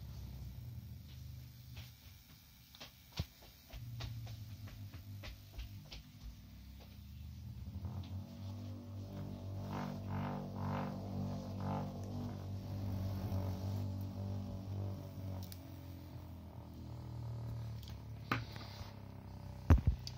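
Homemade magnetic stirrer's small coil motor humming as its speed knob is turned. The drone swells and fades, strongest in the middle, with a few light clicks and a sharper knock near the end.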